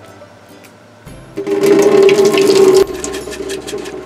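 Rinse water pouring out of an upturned mason jar through its plastic mesh strainer lid and down a drain. A quiet trickle about a second in swells into a loud gush for about a second and a half, then dwindles to a dribble.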